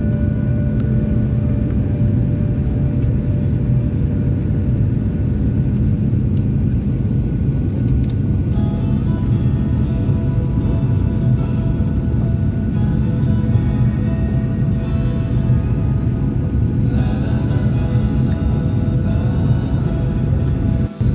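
Steady low rumble of a Boeing 737 cabin in descent, engine and airflow noise heard from a seat by the wing, with background music over it.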